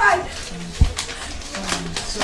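Low, moaning hums of a scalded girl in pain, with a short falling cry at the start. A single dull thump comes a little under a second in.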